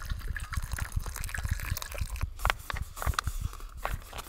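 Boiled water pouring and trickling into a freeze-dried meal pouch, with small crackles and a few sharp ticks from the pouch being handled.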